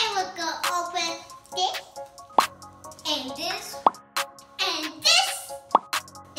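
Several short, sharp pop sound effects, spaced a second or two apart, amid children's wordless high-pitched vocalizing that slides up and down.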